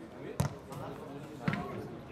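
A football struck twice: a sharp thud a little way in and another about a second later, with players' voices calling out around it.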